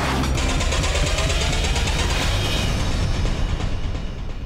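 Cinematic title-sequence sound design: a long whooshing rumble over a deep bass drone, thinning out near the end.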